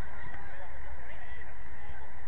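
Indistinct, overlapping short shouts and calls from players on a football pitch, heard at a distance, over a steady low rumble.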